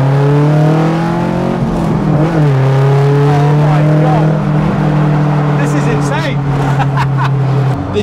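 Tuned classic Mini's four-cylinder engine heard from inside the stripped cabin, revving up hard under acceleration. The pitch dips briefly about two seconds in as it changes gear, then climbs again, holds steady, and drops off near the end as the throttle is lifted.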